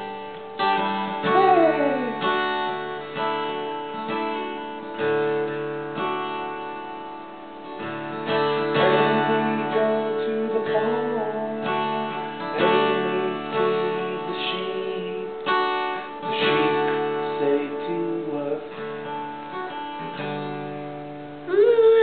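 Steel-string acoustic guitar strummed slowly, chords ringing on between strums, played as a lullaby.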